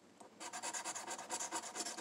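Coin scraping the scratch-off coating of a paper lottery ticket in rapid back-and-forth strokes, starting about half a second in.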